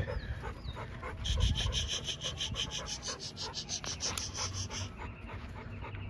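A dog panting fast and evenly, about five breaths a second, for several seconds, with a dull thump about a second and a half in.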